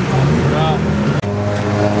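A car engine running steadily at a constant pitch, in a Mazda Miata race car, with a brief voice over a low hum before a sudden cut about a second in.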